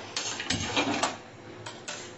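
A metal dosa tawa being handled on a gas stove: one sharp knock about half a second in, with rustling around it, then two light clicks near the end.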